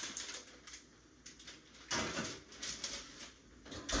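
Light clicks and clatter from a kitchen oven as a tray is put inside, with a louder knock about two seconds in and a low thud near the end.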